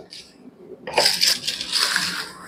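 A click as the foot control of a portable dental unit is pressed, then about a second later a steady rush of compressed air hissing through the handpiece line, over a faint low hum from the unit.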